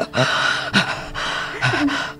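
Acted, laboured gasping for breath by a woman, about three harsh breaths in quick succession: a dying person struggling for air.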